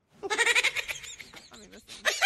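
Rubber screaming-chicken toy squeezed, giving a wavering, bleating squawk that starts just after the beginning and fades away over about a second and a half.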